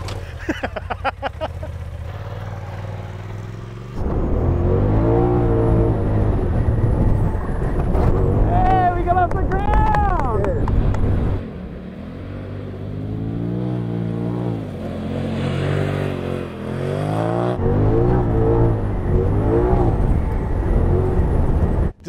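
Polaris RZR Turbo S side-by-side's turbocharged twin-cylinder engine revving hard as it is driven around a dirt track. The pitch climbs and falls again and again, with the throttle dropping off briefly about twelve seconds in and again near seventeen seconds.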